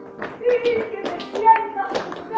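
Flamenco palmas: hand claps and sharp percussive taps in an uneven run of strikes, with voices calling between them.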